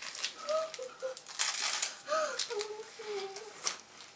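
A crunchy puffed corn snack stick being bitten and chewed, with sharp crisp clicks scattered through, and its plastic wrapper crinkling. Short hummed "mm" sounds from the taster run alongside.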